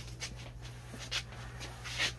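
Panini Prizm chrome baseball cards being handled in the hands, sliding against each other in a few brief rustles and clicks, over a steady low hum.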